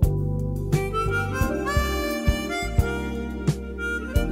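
Music: a chromatic harmonica playing a smooth melody with gliding notes over bass and light percussion.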